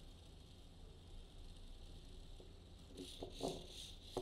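Very faint: the small wheel motors of an Ozobot line-following robot whirring softly as it drives along the lines. A few soft clicks come near the end.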